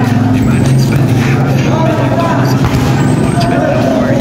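Players' voices calling out across a volleyball court over a steady low machine hum, with a few short knocks of play.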